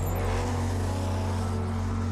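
Mini rally-raid buggy's engine revving up as it pulls away on sand and passes close by, its pitch rising in the first half-second and then holding steady.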